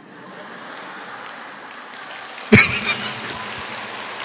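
An audience of women laughing and clapping, building up, with a sudden loud burst of laughter about two and a half seconds in.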